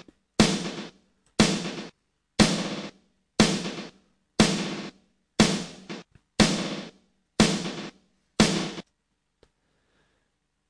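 Snare drum hits about once a second, nine in all, each chopped by Ableton Live 8's Beat Repeat effect on a fine grid into a short buzzing stutter that fades out. Silence between the hits; the last one comes shortly before the end.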